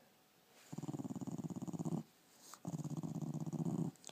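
Dog growling while being petted: two long growls, one starting just under a second in and the other about halfway through. Each lasts over a second and is given as a playful 'good morning' greeting.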